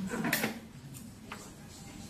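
Small handling noises while threading a sewing-machine needle: a short rustling clatter about a quarter second in, then two light clicks about a second in.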